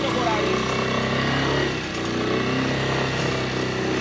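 Small motorcycle engine idling steadily, with faint voices nearby.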